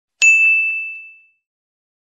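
A notification-bell sound effect: one bright ding about a quarter second in, ringing out over about a second.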